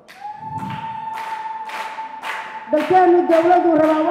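A woman singing into a microphone: one long held high note, then a sung line of sustained notes from a little under three seconds in, with hand claps about twice a second.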